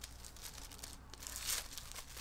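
Faint rustling and tearing of wrapping being pulled open by hand, with a brief louder rustle about a second and a half in.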